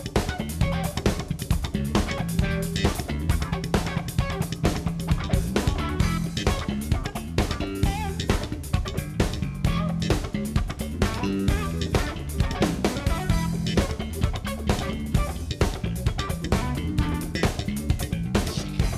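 Live electric bass guitar solo, busy fast-moving bass lines played over a drum kit keeping a steady beat.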